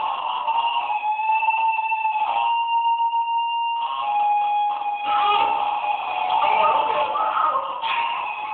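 Experimental electronic noise music played live on a mixer and effects units: held, wavering high tones over a hiss, shifting every second or two. About two and a half seconds in, the hiss drops away and a purer steady tone holds for just over a second before the noisier texture returns.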